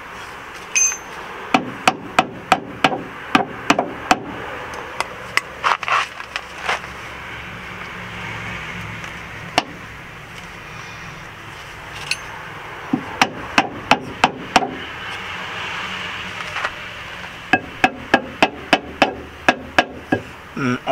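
Hammer blows on a car's front suspension control arm, knocking it into position to line up its bolt holes. The strikes come in quick runs of sharp knocks, about three a second, with pauses between.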